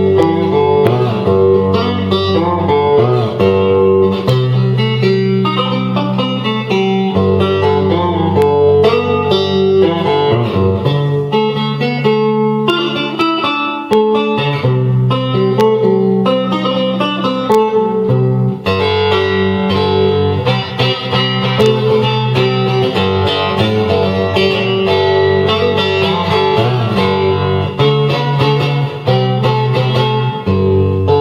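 Three-string cigar box resonator guitar with a copper cone, played through an amp via its Pigsquealer pickup. The picked melody runs without a break over a low bass note that changes every second or two.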